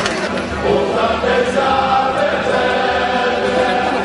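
A group of voices singing together in chorus, coming in about half a second in over crowd noise.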